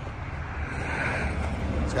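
Wind buffeting the microphone: a steady low rumble, with a soft hiss that swells and fades around the middle.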